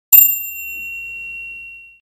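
A single bright bell ding, struck once and ringing out on one clear high tone that fades over nearly two seconds.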